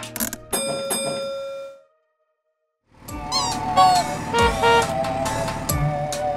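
A children's song ends on a held chord that fades away within about two seconds. After about a second of silence, the next song's bright instrumental intro begins.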